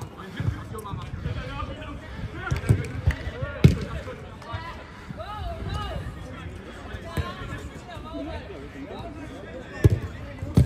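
A football being kicked during play: several short, sharp thuds, the loudest about three and a half seconds in, among players' distant shouts and calls.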